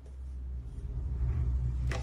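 A low rumble that grows louder, with a short sharp sound just before it cuts off abruptly.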